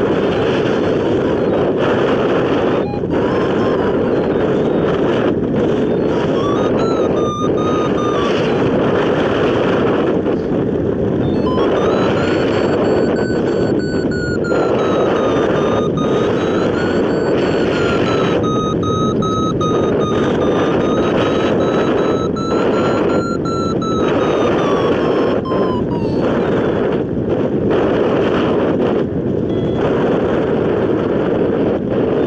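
Wind rushing over the microphone of a hang glider in flight, a loud steady rush. A thin tone that wavers slowly in pitch sounds over it briefly near the start, then again for most of the middle, sinking as it fades out.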